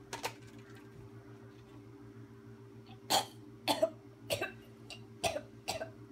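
A woman choking and gasping in short, harsh bursts, about two a second, starting about halfway through, as she is strangled from behind. A low steady hum sits underneath.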